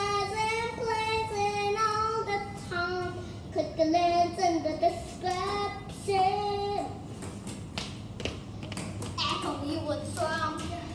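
A young girl singing a slow, wavering melody with no accompaniment. About seven seconds in the singing stops, followed by a few sharp taps or knocks, and then she begins talking near the end.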